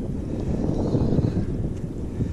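Wind buffeting the camera microphone as a steady low rumble, over choppy water around a plastic fishing kayak.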